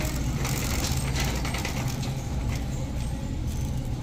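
Wire shopping cart rolling on a store floor, its basket and wheels rattling and clicking, over a steady low hum.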